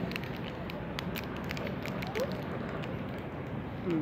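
Plastic snack wrapper crinkling and crackling in irregular small clicks as it is opened, over steady outdoor street background noise.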